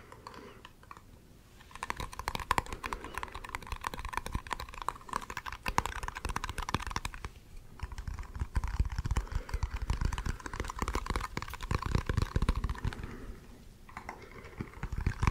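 Fingernails tapping rapidly on a small round lidded container, in two long runs of quick clicks with a brief pause about seven and a half seconds in.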